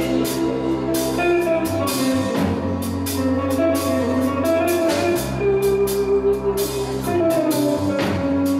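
Progressive rock band playing live in an instrumental passage: drum kit with regular cymbal strikes, electric bass holding low notes that change every second or two, and electric guitar.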